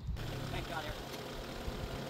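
Kubota compact tractor's diesel engine idling steadily, heard from a few metres off.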